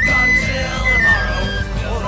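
Tin whistle playing a lively folk melody of held high notes, stepping down in pitch about a second in, over a rock band backing track with drums and bass.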